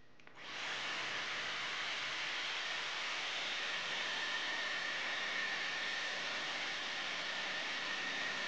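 Dyson Airwrap hair styler switching on about half a second in and running steadily: a rush of blown air with a faint high whine from its motor.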